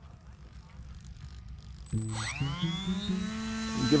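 Small brushless electric motor and propeller of a ZOHD Drift foam RC plane spinning up: a whine that starts about two seconds in, rises quickly in pitch and then holds steady. The motor has just been throttled up in INAV launch mode, ahead of the hand launch.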